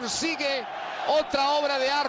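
Spanish-language television football commentary played from a match highlight video: a man's voice speaking, holding one drawn-out word through the second half.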